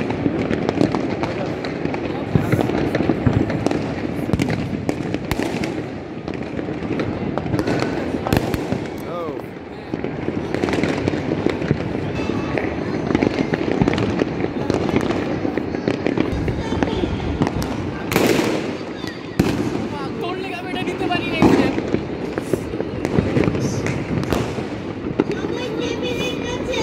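Many fireworks and firecrackers going off across a city, a continuous dense crackle of pops and bangs with no let-up. A thicker run of loud cracks comes about two-thirds of the way through.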